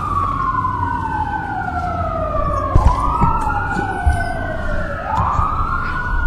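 An emergency vehicle's siren wailing: each cycle climbs quickly and falls slowly, repeating about every two seconds, over a low rumble.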